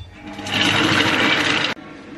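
Kitchen robot's food-processor blade spinning at high speed, blending a thick mix of hazelnuts, cocoa, sugar and coconut oil into chocolate spread. It starts about half a second in and cuts off suddenly near the end.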